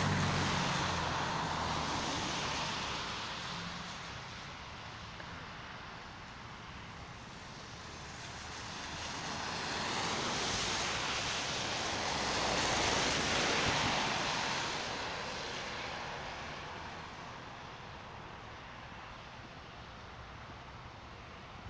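Cars driving past on a wet road: the hiss of tyres on wet asphalt swells as each car approaches and fades as it goes by. One car passes at the start, and more pass around ten and thirteen seconds in.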